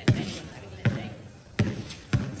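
A basketball being dribbled on a concrete court: three hard bounces about three-quarters of a second apart, each with a short hollow ring after it.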